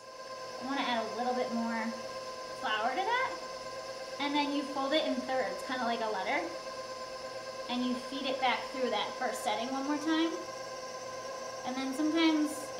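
A woman talking over a steady, faint hum.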